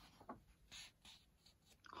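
Faint rustling of a colouring book's paper pages under a hand: a few brief, soft scuffs.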